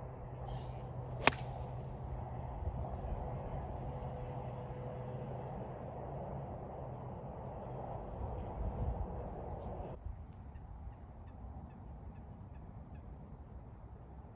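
A 7 iron strikes a golf ball once, a sharp crack about a second in, over steady outdoor background noise that drops a little near the end.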